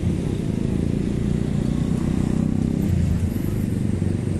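Street traffic: vehicle engines running close by in slow, held-up traffic, a steady low rumble with a faint engine hum that swells in the middle.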